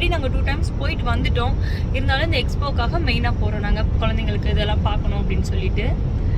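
Steady low rumble of road and engine noise inside a moving car's cabin, under a woman talking.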